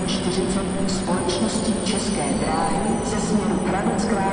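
Railway station ambience at Prague main station: a steady low hum from trains standing at the platforms, under a murmur of distant voices and scattered short clicks and knocks.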